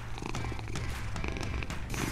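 Cat purring, a steady low rumble, with background music underneath.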